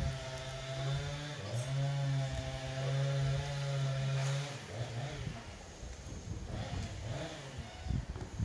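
A small engine running steadily off-camera. It drops out briefly about a second and a half in, then runs again until it stops about halfway through, leaving irregular rustling noise.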